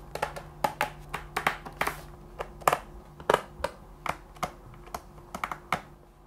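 A small screwdriver driving screws into a MacBook Pro's aluminium bottom cover: light, irregular clicks and taps of metal on metal, several a second.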